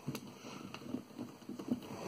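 Faint handling noise from a plastic Godzilla action figure being posed: soft rubbing and a few light clicks as its arm joints are rotated by hand.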